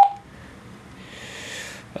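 A single short, sharp key beep from the Juentai JT-6188 mobile radio as a front-panel button is pressed, followed about a second in by a faint hiss.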